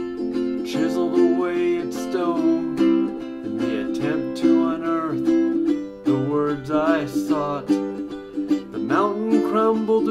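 Ukulele strummed in steady chords, with a man's voice over it.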